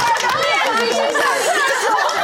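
Studio panel laughing and chattering over one another, with some hand clapping, after a joke.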